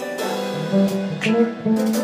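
Live jazz combo playing: a plucked bass line with piano chords and cymbal strikes from the drum kit.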